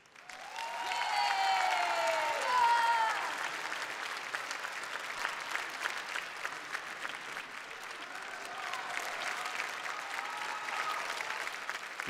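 Audience applauding steadily, rising to full strength within the first second, with a few voices heard over the clapping in the first three seconds.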